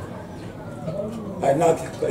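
A man's voice in a short exclamation about a second and a half in, after a quieter first second.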